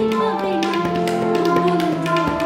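A woman singing a slow Bengali song, accompanied by tabla played with light, quick finger taps over a steady held drone note.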